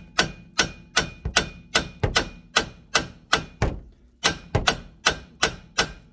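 Hammer blows on the steering knuckle of a K11 Micra's front suspension, about two to three sharp metallic strikes a second with a short pause partway through, to shock the lower ball joint's stud loose from the knuckle while the arm is lifted.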